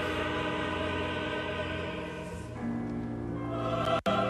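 Twentieth-century operatic music for orchestra and choir: sustained chords held, then moving to a new chord a little past halfway, with a very brief cut in the sound at the very end.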